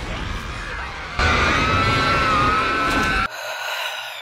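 Loud horror-film soundtrack: a dense, rumbling wall of noise, joined about a second in by a long, high, slightly wavering shriek that cuts off abruptly near the end.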